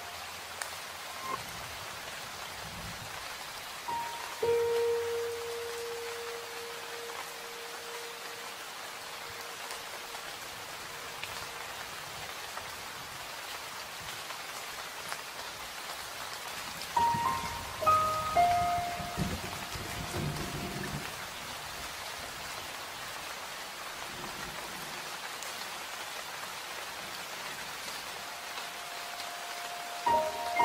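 Steady rain falling, a continuous even hiss. Over it are sparse soft music notes: a long held note about four seconds in, and a short run of notes in the second half.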